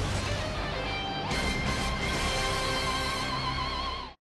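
Music with no commentary. About a second in, a new chord comes in and its long held notes waver slightly, then everything cuts off suddenly at the very end.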